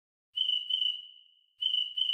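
Recorded cricket chirp sound effect from theCRICKETtoy iPhone app, played twice about a second and a quarter apart. Each chirp is a quick double pulse on a high steady tone that lingers and fades away.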